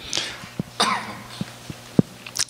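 A person coughing twice in short bursts, about two-thirds of a second apart, with a few faint clicks in between.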